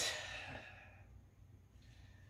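A man's sigh, a breathy exhale that fades away over about a second, followed by near silence over a faint low hum.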